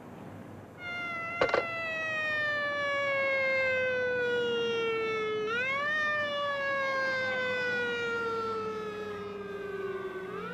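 Ambulance siren wailing: its pitch sinks slowly for about four and a half seconds, sweeps quickly back up, and sinks again, rising once more near the end. A single sharp knock comes about a second and a half in.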